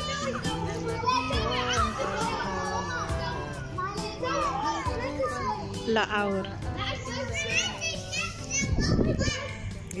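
Children shouting and calling out to each other while playing in a swimming pool, their voices overlapping throughout.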